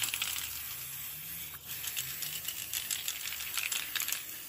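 Aerosol spray paint cans rattling and clicking as they are handled and shaken, over a faint spray hiss.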